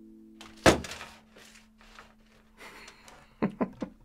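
An audio recorder slipping out of its stand: one sharp thunk about half a second in, then rustling and a few quick clicks as it settles. Underneath, the last note of a sansula (a kalimba mounted on a drum-skin frame) fades away.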